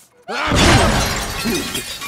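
A shop's glass window shattering together with china breaking, bursting in suddenly about a third of a second in and trailing off in clattering debris.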